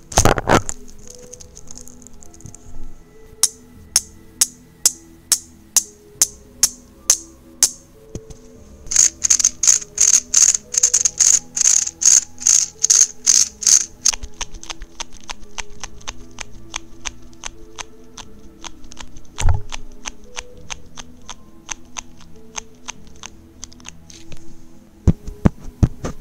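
Hard plastic fidget toys clicking as they are twisted and handled, a run of sharp clicks about two a second that grows louder and quicker for a few seconds mid-way, over soft background music. A thump comes just after the start and another about two-thirds of the way through.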